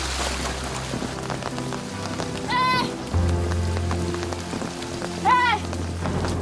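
Steady rain falling under background music with sustained low notes. Two short high-pitched cries come about two and a half and five seconds in.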